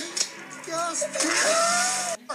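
A child's voice in gliding, sing-song tones, with a loud hiss joining in over the last second.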